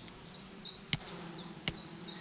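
Honeybees buzzing steadily around an opened hive, a faint continuous hum. Two sharp clicks come about one and one and a half seconds in.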